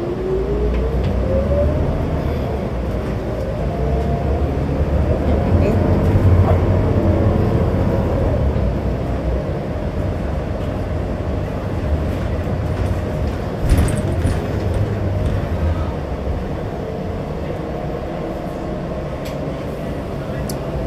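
Interior of a New Flyer XD60 diesel articulated bus under way: a rising drivetrain whine over the first two seconds as the bus gathers speed, then a steady hum over a heavy engine rumble that eases off in the second half. A single clunk sounds about two-thirds of the way through.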